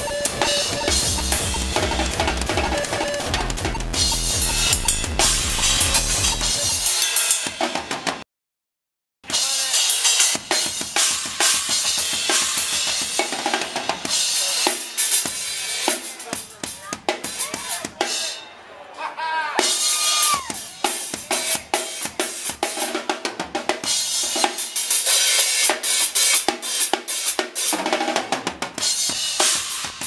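Live band music with a heavy bass line that cuts out abruptly about eight seconds in. After a second of silence, a drum kit plays on its own with dense, irregular hits and little bass.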